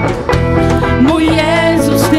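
Loud live worship band music: electric guitar, bass and drums playing a song, with a voice singing over it.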